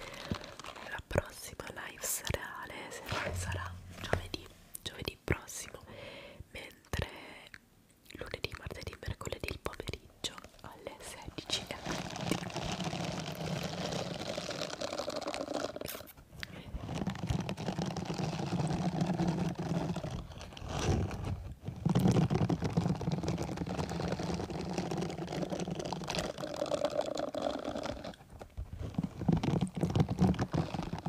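Silicone scrubber glove with rubber bristles rubbed against the microphone grille. There are irregular scratches and taps at first, then steady rubbing with a few short breaks.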